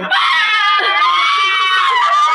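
A woman's long, high-pitched scream of excited surprise. It starts just after the beginning and is still going at the end.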